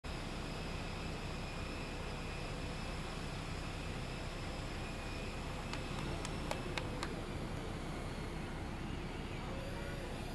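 Steady whine and rumble of a parked jet aircraft's turbine, with faint high steady tones over the noise. A handful of sharp clicks come about six to seven seconds in.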